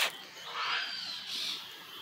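A sharp click at the very start, then a single harsh, noisy bird call lasting about a second, starting about half a second in.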